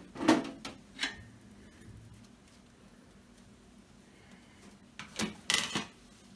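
Side panel of a desktop computer case being slid off and lifted away: two short metallic knocks about a second apart at the start, then a louder clatter of the panel being handled and set down near the end.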